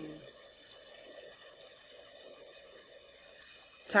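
Steady rain, an even hiss that runs unbroken under the pause in the reading.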